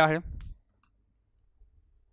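A man's voice finishing a word, then quiet room tone with one faint click just under a second in.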